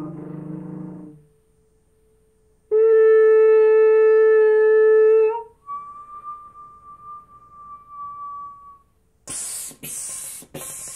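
Solo trumpet in a contemporary piece: a lower, buzzier sound fades out about a second in, and after a short gap a loud held note sounds for about three seconds, bending up in pitch as it ends. A softer, thin, higher note follows, then near the end come rushing bursts of breathy air.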